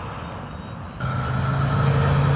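Twin electric ducted fans of an RC A-10 jet running in flight, a steady drone that jumps louder about a second in and then holds steady.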